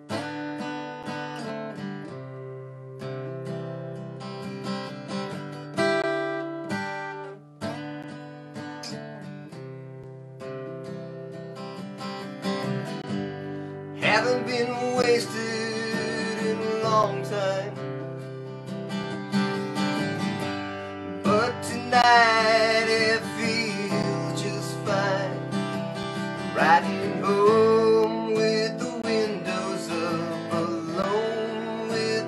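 Solo acoustic guitar playing a song intro: separate picked notes at first, growing louder and fuller about halfway through.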